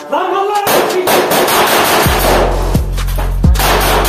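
Gunfire sound effects layered over background music. The music brings in heavy, falling bass-drum hits and a deep bass about two seconds in.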